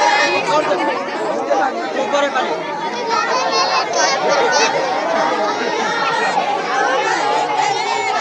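Crowd chatter: many voices talking at once in a steady babble of overlapping speech.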